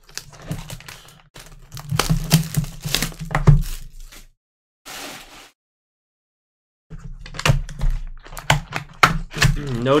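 A shrink-wrapped cardboard trading-card hobby box being handled and opened: irregular knocks and thunks of the box on the table, and crackling as the plastic wrap is torn off and the lid pulled open. The sound cuts out completely for about two seconds midway.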